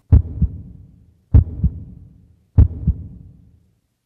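Heartbeat sound effect: three double thumps, a strong beat and a softer one just after, about a second and a quarter apart, ending a little before the end.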